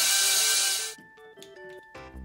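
Toy power drill whirring with a loud hiss that cuts off suddenly just under a second in, leaving soft background music with a stepping melody.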